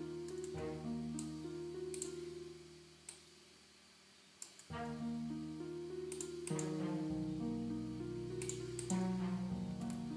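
Band-pass-filtered orchestral strings playing a slow melody of held notes that step up and down. The melody stops about three seconds in and starts again about a second and a half later. Mouse clicks sound over it.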